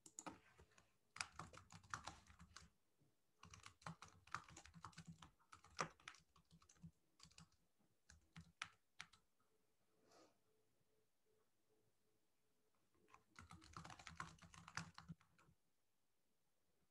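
Faint typing on a computer keyboard: bursts of rapid key clicks, pausing for a few seconds before a last burst near the end.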